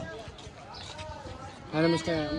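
Indistinct voices of people talking in the background, with a louder voice starting near the end.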